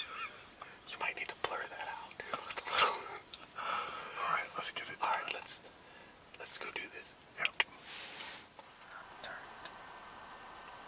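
Low whispering between two people, in short breathy exchanges that die away in the last couple of seconds.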